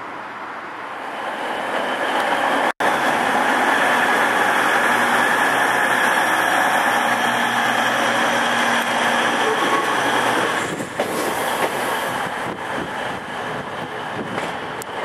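Electric passenger train with double-deck coaches passing at close range: a loud, steady rumble of wheels on rail that builds over the first few seconds. About ten and a half seconds in, the rumble drops and turns uneven, with scattered clicks, as the end of the train goes by. A brief dropout about three seconds in marks an edit.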